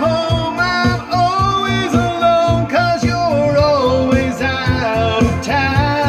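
A man singing into a handheld microphone over backing music with a steady bass beat. He holds and bends long sung notes.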